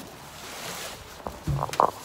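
Footsteps and knocking handling noises, starting about two-thirds of the way in after a stretch of soft hiss.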